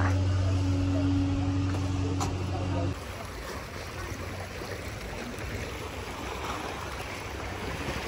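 A steady low mechanical hum that cuts off suddenly about three seconds in, followed by small sea waves washing and lapping against rocks and a stone walkway at the water's edge.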